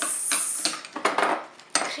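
A metal spoon scraping and clinking against a glass bowl as a soft cream cheese mixture is scooped out, with a plastic bag crinkling. The rustling and scraping fill most of the stretch, with a sharp click near the end.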